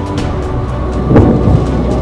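Deep, thunder-like rumble of a distant smokestack demolition, the blast and collapse sound arriving across miles of open ground, with its loudest surge about a second in.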